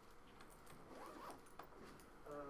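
Near silence: quiet room tone with faint rustling and a few small clicks.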